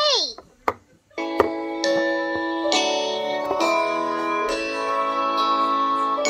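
Children's toy talking pen playing a tune through its small speaker: bright, plucked-sounding notes changing about once a second. It opens with a short falling-pitch sound and two sharp clicks before the music starts.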